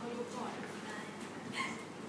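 Faint, indistinct voices in a classroom, with a brief sharper sound about one and a half seconds in.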